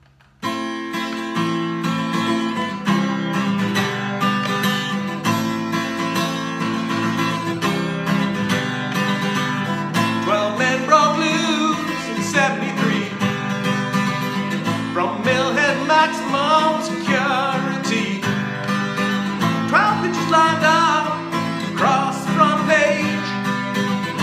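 Acoustic guitar strummed in a steady rhythm, starting about half a second in. A man's singing voice joins over the guitar about eleven seconds in.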